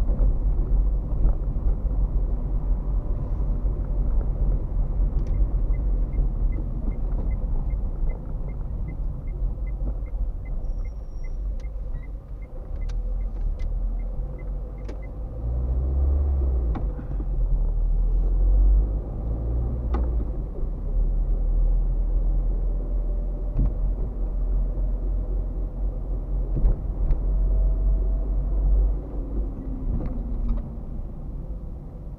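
Car cabin noise while driving slowly, recorded from inside: a steady low rumble of engine and tyres with occasional sharp knocks. Midway comes a run of light ticks, about three a second, for roughly ten seconds, typical of the turn-signal indicator before a turn.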